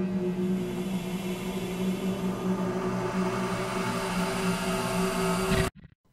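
A steady low electronic drone with a hiss over it, holding one pitch, then cutting off suddenly just before the end.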